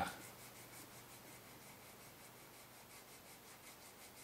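Faint rubbing of wet 400-grit sandpaper, backed by a piece of eraser, worked back and forth over the lacquered rosewood fingerboard of a guitar neck to flatten a ridge in the lacquer.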